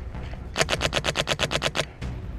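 Airsoft gun firing a rapid burst of about a dozen shots, roughly ten a second, starting about half a second in and stopping shortly before the end.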